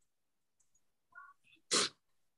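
A few faint, brief sounds, then a single short, sharp burst of noise near the end.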